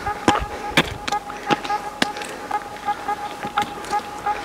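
Metal traction spikes clicking and scraping on granite as a hiker steps and scrambles over boulders: irregular sharp clicks about one or two a second, with a thin steady tone underneath.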